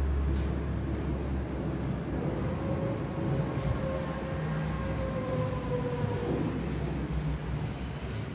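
Steady low rumbling noise, with a faint drawn-out whine through the middle that dips slightly before fading.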